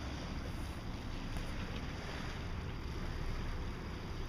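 Wind on the microphone outdoors: a steady, fluttering low rumble with a faint hiss above it.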